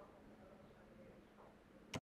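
Near silence: faint room tone, ending in one short, sharp click.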